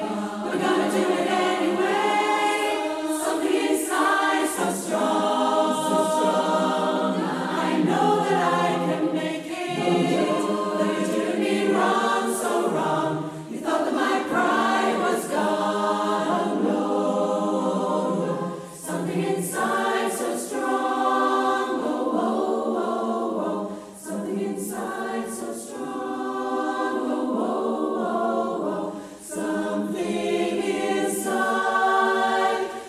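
A choir singing held notes, with short breaks between phrases a few times in the second half.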